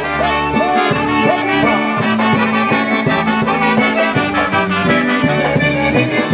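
Live polka band playing: trumpets together with a piano accordion and a concertina over a steady drum beat.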